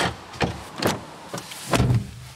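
Door handle and latch clicking and knocking several times, then a car door shut with a heavy thump near the end.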